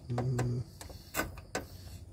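A soldering iron's tip tapping against a leaking radiator seam: several light, sharp clicks, the loudest a little past the middle. A man's short hum comes at the start.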